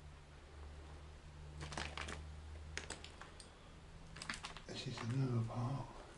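Footsteps crunching and clicking on debris and broken glass strewn over the floor, in three short clusters of sharp clicks. Near the end a brief low voice sound, a mutter or hum, is the loudest thing.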